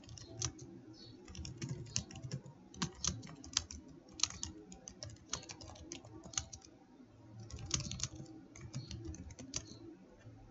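Typing on a computer keyboard: an irregular run of keystroke clicks with brief pauses between bursts.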